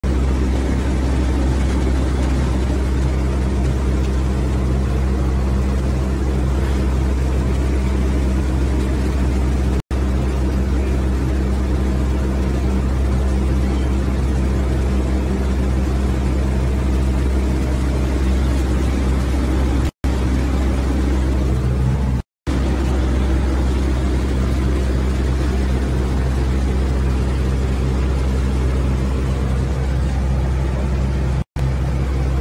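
A loud, steady low mechanical hum with a constant drone, cutting out briefly three times.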